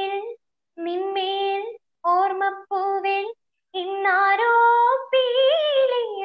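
A young woman singing unaccompanied, holding long notes in short phrases. Each phrase cuts off to dead silence, as a video call's audio does, and the last phrase climbs and falls in pitch.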